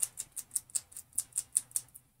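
Foam pouncer dabbing etching cream through a screen stencil on a glass casserole dish, making quick, light taps at about five or six a second.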